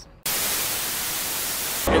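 A burst of steady static hiss, like white noise. It cuts in sharply about a quarter of a second in, holds an even level, and stops just as abruptly about a second and a half later.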